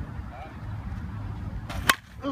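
A slow-pitch softball bat strikes a pitched ball once near the end, a sharp ping with a brief ring, over a low steady rumble.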